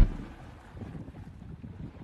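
Outdoor wind on the microphone by the sea: a low, uneven rush of noise, with the last of a guitar and keyboard tune breaking off at the very start.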